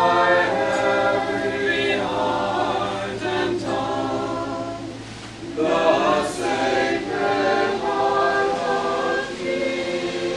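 A congregation singing a hymn unaccompanied, in long held notes, with a short break about five seconds in before the singing picks up again.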